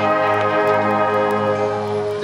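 School marching band playing an instrumental passage in steady, held chords, with no voice.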